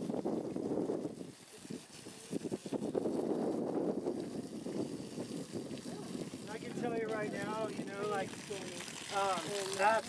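A rake scraping through wood-chip mulch while a garden hose sprays water onto it, a rough rustling noise with a short lull about a second and a half in.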